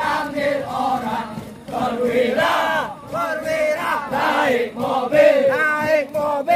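A group of recruits singing a marching chant together as they jog in formation. Many voices carry sung phrases that rise and fall, with a short dip just before the second second and again around the third.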